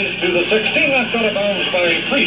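Speech: a man talking on a radio football broadcast taped off the air, with a steady hiss of noise underneath.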